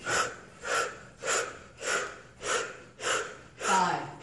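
Forceful rhythmic exhalations, about seven puffs in four seconds, as in the kapalbhati breathing exercise of a Bikram yoga class. Near the end the puffs take on a voiced tone.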